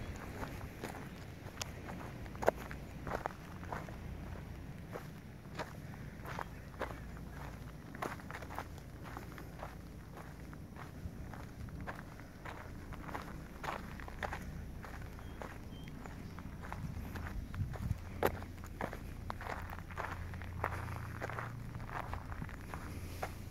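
Footsteps crunching along a dirt trail at a steady walking pace, about two steps a second, over a steady low rumble.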